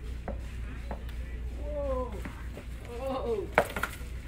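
Short exclamations from people nearby, then a sharp clack with a few smaller knocks near the end: a skateboard deck and wheels hitting a hard floor as the rider loses his balance and steps off.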